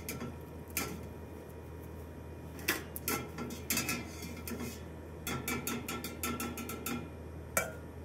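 Metal utensils clinking against a metal pot while pasta is reheated in boiling water: a series of sharp clinks, with a quick run of them around the middle and a louder one near the end, over a steady low hum.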